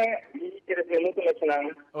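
Speech over a video-call link, the voice thin and cut off in the highs like telephone audio.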